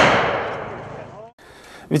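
The tail of a volley of blank rifle fire from an honour guard, its report ringing out and fading away over about a second before cutting off abruptly.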